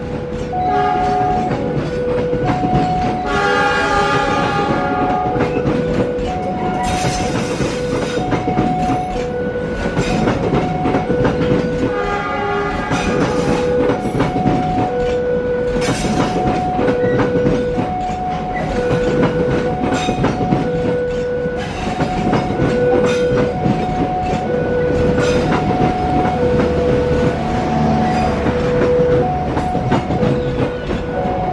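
Passenger train coaches rolling past with a steady clickety-clack of wheels over rail joints, while a level-crossing warning alarm repeats a high-low two-tone chime. The train horn sounds in blasts a few seconds in and again about twelve seconds in.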